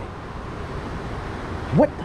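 Steady outdoor background noise with no distinct events, then a man's short exclamation, "what," near the end.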